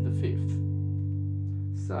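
Stratocaster-style electric guitar holding a single chord, a spread D major voicing with F sharp in the bass and the open D string ringing, sustaining and slowly fading until it is stopped near the end.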